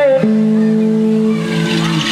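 Electric guitar holding sustained notes: a higher note gives way about a fifth of a second in to low notes that ring on steadily and fade near the end.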